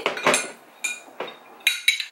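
A spoon clinking against a drinking glass as a powdered drink is stirred: a string of sharp, irregular clinks, each with a short ring.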